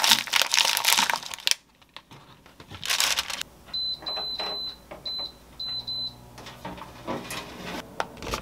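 Plastic packaging crinkling as it is handled. Then a Zolele air fryer oven's control panel beeps several times as its buttons are pressed, short high beeps with one held longer.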